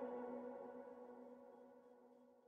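The closing held synth chord of an electronic dance track ringing out and fading steadily, dying away to silence about a second and a half in.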